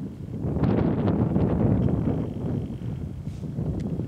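Wind buffeting the camera's microphone: a gusty low rumble that swells about half a second in and stops abruptly at the end.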